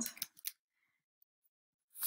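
Near silence after a voice trails off in the first half second, broken by a short hiss-like sound at the very end.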